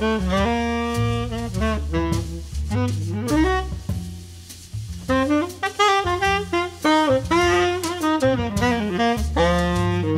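Jazz tenor saxophone playing a melodic line of held notes and quick runs over double bass and drums, growing briefly softer about four seconds in.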